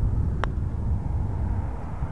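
A putter striking a golf ball once: a single short, sharp click about half a second in. Under it runs a steady low rumble.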